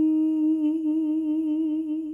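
A singer's voice holding one long note of a hymn. It is steady at first, then takes on a slow, even vibrato from about half a second in.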